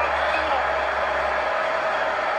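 Steady hiss and hum of a car's interior, with a low hum that fades away about a second and a half in.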